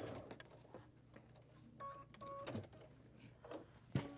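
Faint clicks and rustles of fabric being drawn away from a sewing machine, with two short electronic beeps about two seconds in.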